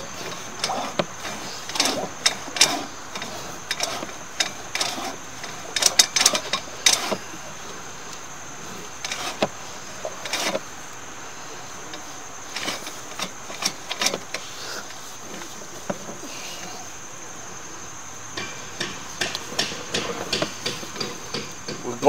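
Irregular knocks and clicks in clusters, with a quieter lull after the middle, as a sewer inspection camera's push cable is worked back and forth to get the camera head through a clogged trap. A steady high hiss runs underneath.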